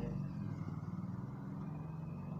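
Sewing machine running at a steady speed, stitching a seam.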